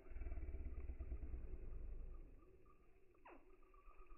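Slowed-down sound of slow-motion footage, deep and muffled: a low rumble that drops away about two seconds in, then a single falling whistle a little after three seconds.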